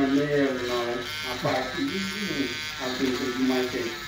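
Water-cooled rotary nail drill running steadily, its burr grinding down a thick fungal toenail, with a thin motor whine. Indistinct talking runs underneath.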